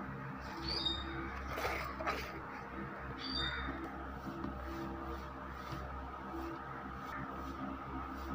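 A bird chirps twice, short and high, about a second and three and a half seconds in, over a steady low hum and faint soft clicks.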